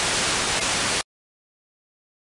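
Steady hiss of radio static from the plane's analog video link as its signal breaks down into snow; it cuts off abruptly about a second in.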